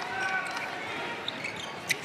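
Indoor arena ambience during live netball play: a steady crowd murmur with court sounds of shoes and ball on the sprung wooden floor, and one short sharp knock just before the end.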